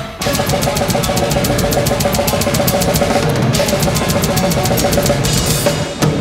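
Death metal drum kit played live at a fast tempo: kick drums, snare and cymbals in rapid, even strokes that come in hard just after a brief dip at the start, under the rest of the band.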